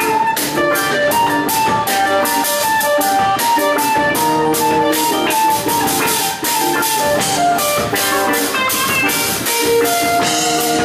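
Live band music with no singing: guitar over a drum kit keeping a steady beat, with a single-note melody line running on top.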